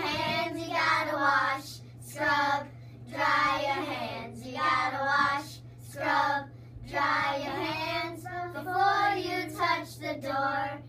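A small group of young children singing together without instruments, in short sung phrases with brief pauses between them.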